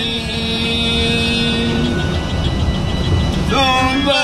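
Coach engine and road noise heard inside the moving bus's cabin, a steady low rumble. A steady low droning tone holds through the first half, and men's chanted Quran recitation starts again near the end.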